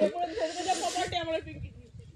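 A person's voice for about the first second and a half, overlaid by a breathy hiss, then only a faint low rumble.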